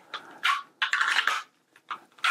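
A pistol being pushed into and worked in a Mission First Tactical Boltaron holster: hard plastic sliding and snapping as the passive retention clicks. There is a short snap about half a second in, a longer sliding scrape, and another brief click near the end.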